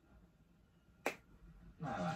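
Near silence broken by a single sharp click about halfway through. Just before the end, the show's music and voices come in.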